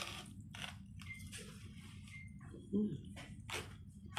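A person eating a mouthful of macaroni and cheese: wet chewing with repeated mouth clicks and lip smacks, and a short hum of the voice about three seconds in.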